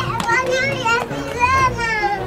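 Children's voices shouting and calling out, several high voices overlapping with rising and falling pitch; the loudest call comes about one and a half seconds in. A couple of sharp knocks sound among them.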